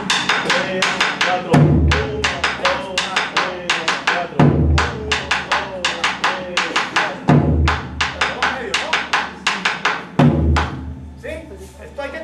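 Tambora drum played with sticks on its wooden shell: a steady run of sharp clicks, with a deep stroke on the drumhead about every three seconds, the accent on the fourth beat of every second bar in the cumbia tambora pattern. The playing stops shortly before the end.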